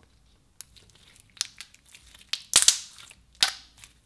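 Clear slime being stretched, pressed and squished by hand, giving a run of crackling, popping clicks. The loudest pops come in two bursts in the second half.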